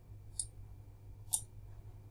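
Two single computer mouse clicks about a second apart, over a faint steady low hum.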